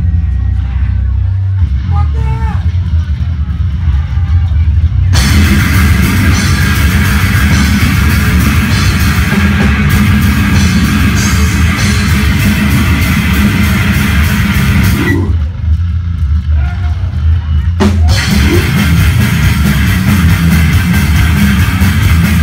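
Death metal band playing live: a low, heavy rumble for the first five seconds, then the full band comes in fast and brutal with distorted guitars and drums. The band drops out about fifteen seconds in and crashes back in near eighteen seconds.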